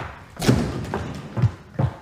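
A few footsteps on a hard floor: a thud about half a second in, then two short, low thumps later on.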